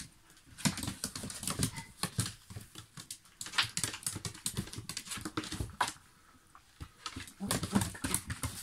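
Small dogs' claws clicking and tapping on a hard tile and board floor as they scramble and play, in quick irregular runs of taps with a short lull near the end.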